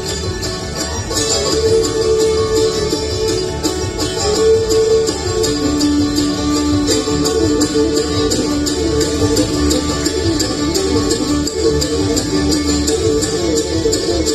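Live bluegrass band playing an instrumental: fiddle playing long held melody notes over quick banjo picking, guitar and upright bass.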